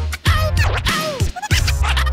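Turntablist scratching on RANE TWELVE motorized controllers through a RANE SEVENTY-TWO mixer: quick back-and-forth scratches of a sample, each a short pitch swoop. The bass of the beat cuts out near the start and comes back about a second and a half in.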